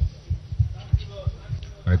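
A run of low, dull thumps, unevenly spaced at about three a second, under faint background voices.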